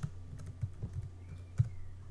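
Typing on a computer keyboard: a quick run of a handful of keystrokes entering a short word, with one louder key strike near the end.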